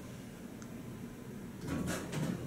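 Quiet indoor room tone with a steady low hum, and a brief soft rustle near the end.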